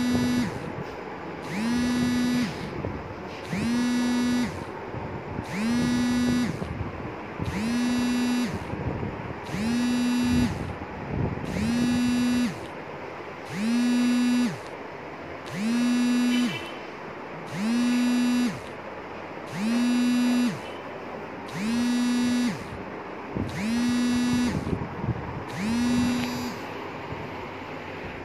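A buzzing alarm tone pulsing on and off in a steady rhythm, about one second on and one second off, repeating about fourteen times.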